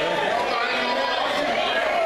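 Overlapping voices of several people talking at once, an indistinct chatter in a large hall.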